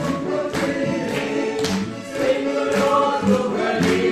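Mixed choir of men's and women's voices singing a Lithuanian song, accompanied by accordion, with a tambourine struck about twice a second on the beat.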